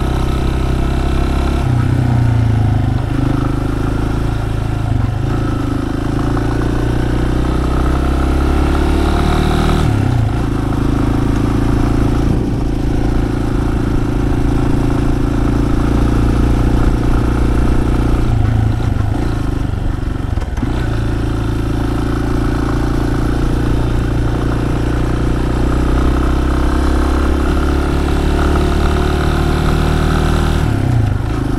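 Yamaha Serow 250's air-cooled single-cylinder engine pulling the bike along a road. The engine note falls and rises again several times as the throttle and gears change.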